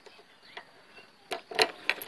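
A few sharp clicks in the second half, from a key turning in a scooter's locking fuel cap as the cap is unlocked and opened.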